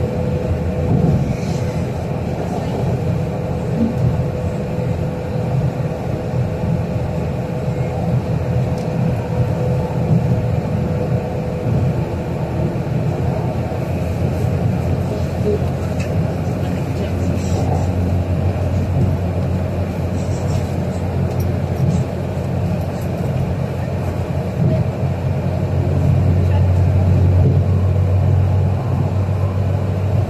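MRT Putrajaya Line train running along an elevated viaduct, heard from inside the car: a steady low rumble of wheels and traction motors that grows louder near the end.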